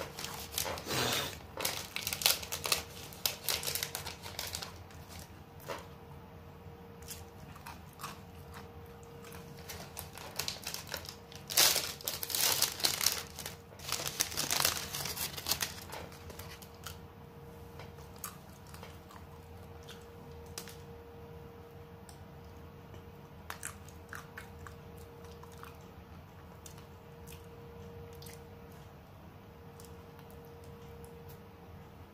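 Crinkling of a cone ice cream's wrapper as it is handled and peeled off, in two spells of dense crackling in the first half, followed by sparse small clicks of eating.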